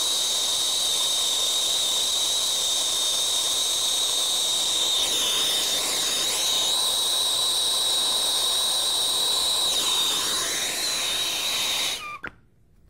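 Harris INFERNO brazing torch flame burning steadily: a loud, even hiss with a high whistle running through it.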